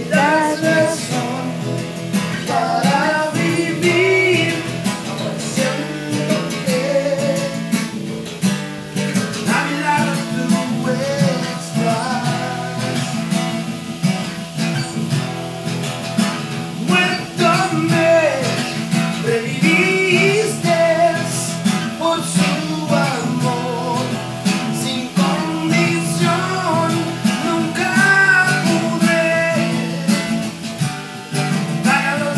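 Acoustic guitar strummed steadily in chords, with a voice singing a melody over it.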